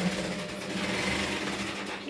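Sewing machine running steadily in the stitching workshop, a continuous motor hum.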